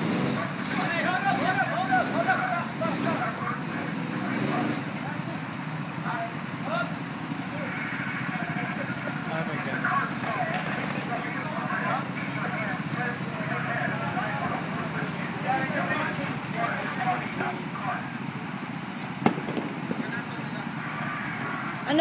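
Indistinct chatter of several people over a steady low engine rumble, with a single sharp click near the end.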